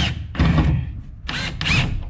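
Cordless screw gun driving a screw that fastens a brick wall tie to the wall sheathing, in two short bursts about a second apart.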